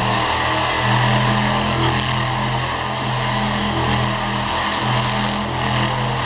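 Monster truck's supercharged big-block V8 engine running loud and fairly steady.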